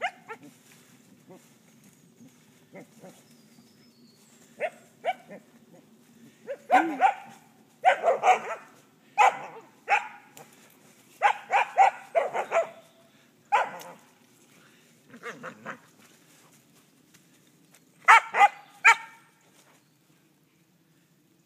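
Dog barking in short bursts, often two to four barks in quick succession, with pauses of a second or more between groups; the loudest groups come in the middle and near the end.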